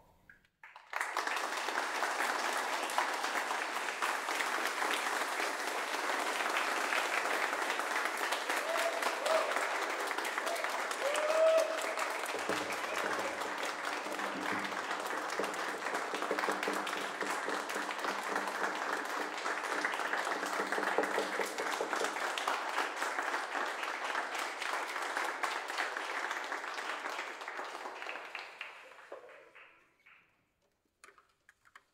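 Audience applauding: dense, steady clapping that starts abruptly about a second in and fades out near the end.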